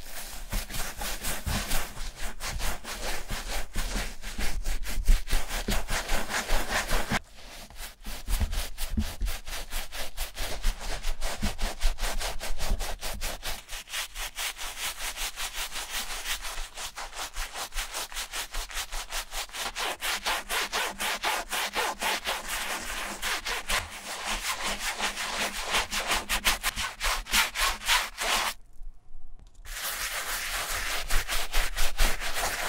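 A wooden-handled brush scrubbing the soapy mesh fabric of a New Balance 773 running shoe in quick, even back-and-forth strokes, several a second. The scrubbing breaks off briefly about seven seconds in and again near the end.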